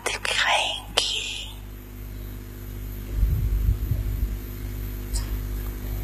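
A woman speaking slowly and softly into a microphone, with a long pause after the first second or so, over a steady electrical hum.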